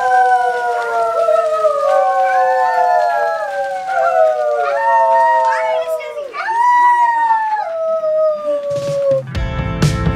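Several young children howling long held notes together, the voices overlapping and each sliding slowly down in pitch. Background music with a drum beat comes in near the end.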